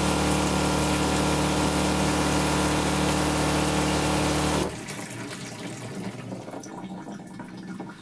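Seaflo 1.2 GPM diaphragm water pump running with a steady hum while water runs through the sink plumbing, cutting off suddenly about four and a half seconds in. Water then trickles down the drain hose into the grey water container.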